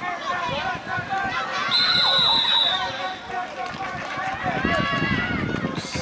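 Spectators shouting and calling out during a running play, with a referee's whistle blown once for about a second, about two seconds in.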